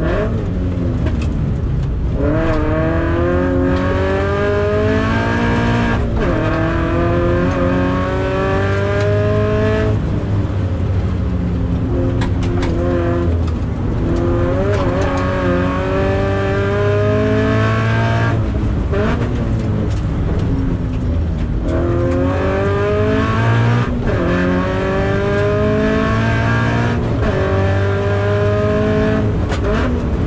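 Toyota 86's FA20 flat-four engine, heard from inside the cabin under race conditions, accelerating hard three times with its pitch climbing and dipping briefly at upshifts, dropping back between pulls as the driver lifts off for corners.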